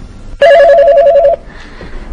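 Telephone ringing once: a warbling electronic trill, two close pitches alternating rapidly, lasting about a second.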